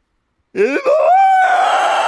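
A man's voice letting out a long, high, melodramatic wail in character. It starts about half a second in, rises, then holds steady on one high note.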